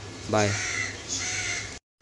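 A crow cawing, with one harsh call about a second in, over a steady low hum. The sound cuts off suddenly just before the end.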